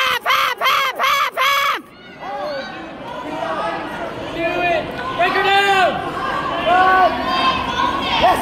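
Spectators shouting during a wrestling bout: a quick run of about five loud yells in the first two seconds, then a crowd of voices calling out and chattering, rising toward the end.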